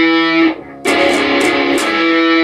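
Electric guitar playing an octave: two notes an octave apart, picked with the middle string muted. The first ringing stroke stops about half a second in. A second passage of quick picked strokes starts just under a second in and rings on.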